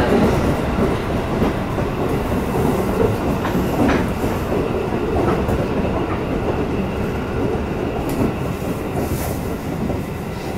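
Running noise of a JR Shin'etsu Line electric train heard from inside the carriage: a steady rumble of wheels on rail with a few faint clicks.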